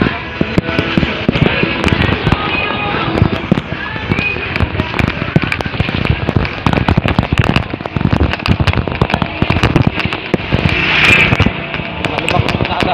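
Wind buffeting a handheld phone microphone while riding, a loud rumble broken by constant irregular crackles and pops.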